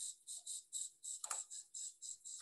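Insect chirping in a quick, even rhythm, about five short high-pitched pulses a second, with a single click about halfway through.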